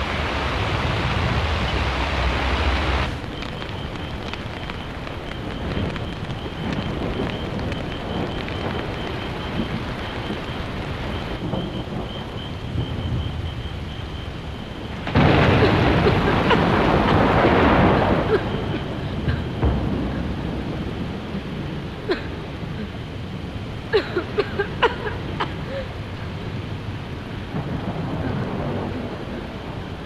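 Film thunderstorm sound: a steady hiss of rain, with a loud rumble of thunder swelling about halfway through and lasting a few seconds.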